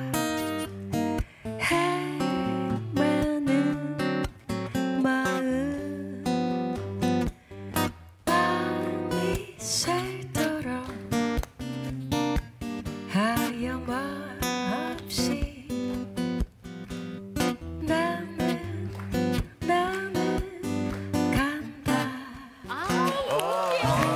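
A woman singing a slow ballad melody over a steel-string acoustic guitar played in a bossa nova rhythm.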